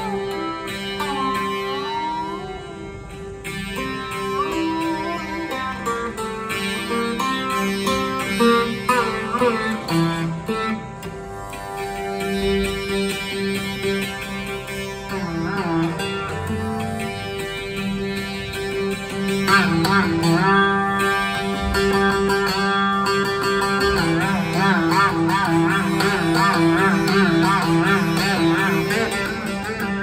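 Rudra veena playing Raag Abhogi over a steady tanpura drone. The melody slides between notes in long glides, and near the end it wavers rapidly up and down in pitch.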